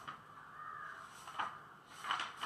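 A bird calling in the background: one drawn-out call, then a short sharp one about a second and a half in.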